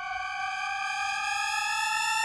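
A single sustained synthesizer tone, its pitch sliding slowly upward, closing out the electronic freestyle track.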